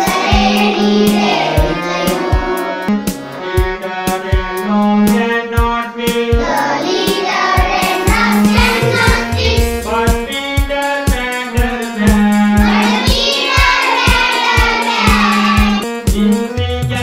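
Children singing a rhyme together over backing music with a steady beat.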